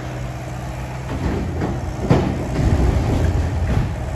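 Excavator engine running steadily while it loads demolition debris into a dump trailer: irregular crunching and clattering of wood and rubble from about a second in, with a sharp crash about two seconds in.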